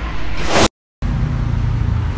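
Steady low rumble of a vehicle engine running nearby, with a brief rising hiss about half a second in; the sound then cuts out to dead silence for a moment before the rumble resumes.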